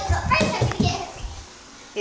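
A child's voice, indistinct, with low knocks from a handheld phone being moved about, fading to quiet for the last half second.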